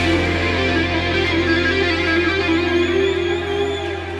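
Instrumental rock music: guitar over a held low bass note, with a wavering high note coming in past the middle.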